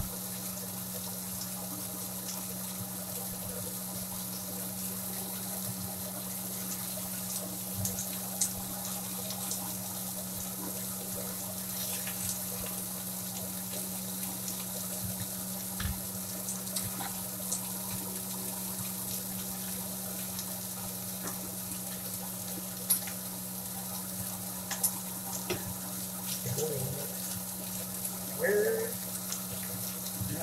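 Ground-beef burger patty frying in a cast iron skillet over a gas flame: a steady sizzling hiss, over a steady low hum, with a few light clicks and ticks.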